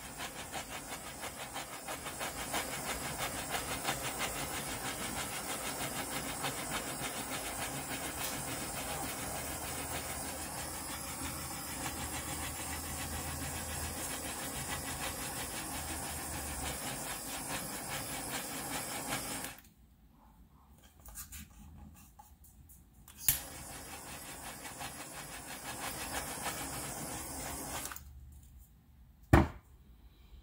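Handheld heat gun running, a steady fan whir and hiss of blowing air. It cuts off about two-thirds of the way through, starts again a few seconds later with a sharp click, and stops again near the end, followed by another click.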